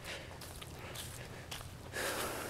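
Quiet footsteps of a person walking on a dirt track covered in fallen leaves.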